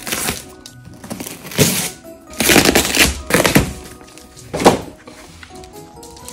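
A Samoyed tearing wrapping paper and cardboard off a gift box with its teeth, in a series of loud rips, several close together in the middle, over faint background music.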